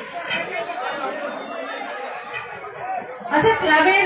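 Crowd chatter and murmuring voices. About three and a half seconds in, one loud voice comes in over the stage microphone and PA.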